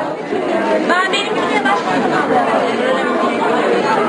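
Crowd chatter: many people talking at once in a large room, voices overlapping with no single speaker standing out.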